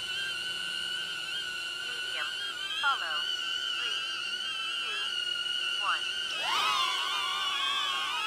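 Small quadcopter selfie drones (HoverAir X1 and DJI Neo) hovering, their propellers giving a steady high whine at two pitches that waver slightly. A little after six seconds in the whine grows louder and shifts in pitch as the second drone is launched from the palm and joins the first.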